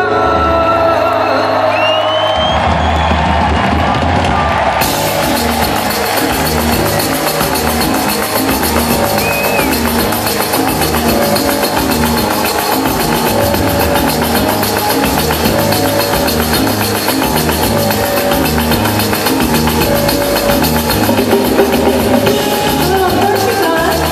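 Live pop-rock concert music over an arena PA system with drums and guitar. A heavy beat comes in about two seconds in, and bright cymbals join a few seconds later, settling into a steady driving rhythm.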